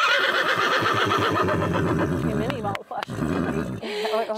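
A brown mare whinnying loudly: one long, fluttering call of nearly three seconds, then a shorter, lower part after a brief break. She is calling to the other horses, unhappy at being separated from them.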